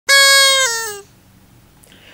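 A short pitched sound effect: one bright, pure-sounding tone held for about half a second, then stepping down in pitch twice and stopping about a second in.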